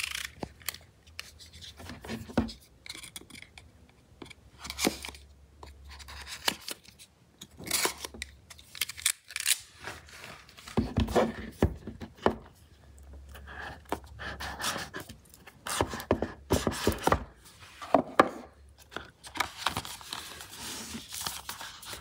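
A cardboard smartphone retail box being handled and opened by hand, with irregular scraping, rustling and sliding of cardboard and scattered sharp taps and clicks.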